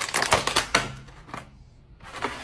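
Clear plastic clamshell container being pried open by hand, its thin plastic lid crackling and clicking in a quick run that fades about a second and a half in.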